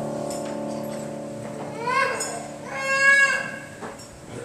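The held closing chord of church music fades out. Then a young child in the congregation gives two short cries that rise in pitch, about a second apart.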